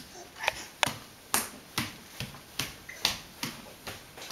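A crawling baby's hands slapping on a bare hardwood floor, a sharp pat about every half second.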